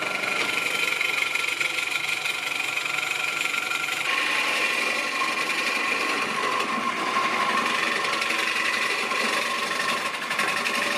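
A gouge cutting the inside of a spinning pine vessel on a wood lathe: a continuous scraping, hissing cut over the lathe's steady whine, and the whine drops in pitch about four seconds in.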